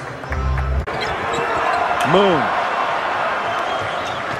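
Basketball arena crowd noise with a ball bouncing on the hardwood and a single voice calling out about two seconds in. A brief low hum comes in the first second.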